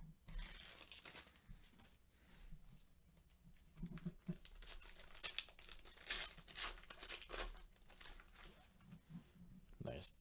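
A trading-card pack wrapper being torn open and crinkled by gloved hands: a string of short, faint crackling rustles, busiest in the second half.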